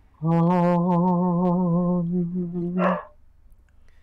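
A man singing one long held note with a slight wobble in pitch, lasting nearly three seconds and ending in a short breathy burst.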